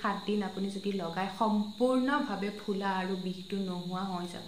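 A woman speaking continuously, with a steady high-pitched whine underneath.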